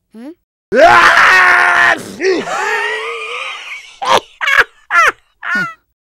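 A person's loud, high-pitched screaming wail starting just under a second in, running into a wavering cry and then a few short vocal outbursts.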